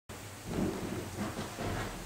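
Steady background hiss and low rumble of room and recording noise, with faint indistinct sounds in it.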